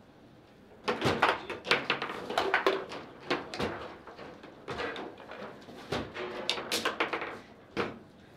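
Table football being played: a quick, irregular run of sharp clacks and knocks as the hard ball is struck by the plastic men and bounces off the table walls, with the steel rods sliding and rattling. It starts about a second in and keeps going nearly to the end.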